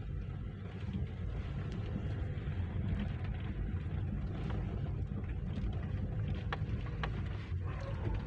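A car driving, heard from inside the cabin as a steady low rumble of engine and road noise, with a couple of faint clicks near the end.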